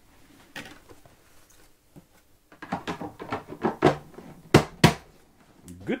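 A run of short clicks and knocks of hard objects being handled, with two sharper, louder knocks a little before the end.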